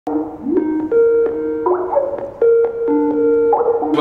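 Electronic keyboard-style music: a melody of held notes that change every half second or so, with a couple of notes sliding up in pitch.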